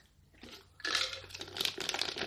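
Clear plastic bag crinkling and rustling around a handled plastic project box, starting about a second in, with small clicks.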